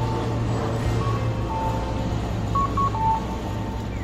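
Background music over street ambience: the even noise of road traffic with a steady low engine hum.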